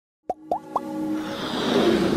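Animated logo intro sound effects: three quick pops, each rising in pitch, about a quarter second apart, then a swell that builds steadily into electronic intro music.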